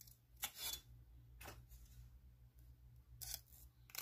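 Scissors cutting a small piece of velcro (hook-and-loop tape), a few faint separate snips.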